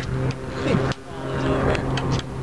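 Fishing boat's engine running with a steady low drone, and a sharp knock about a second in.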